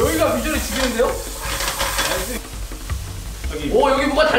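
Meat and mushrooms sizzling in a hot frying pan while being stirred and tossed. The sizzle quietens after about two and a half seconds.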